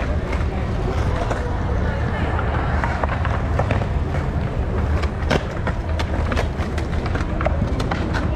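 Skateboard wheels rolling over stone paving slabs: a steady low rumble broken by scattered sharp clacks.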